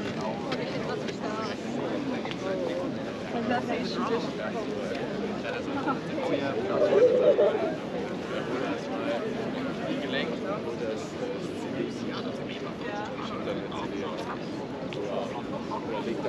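Indistinct chatter of several people talking at once, with one voice rising louder about halfway through.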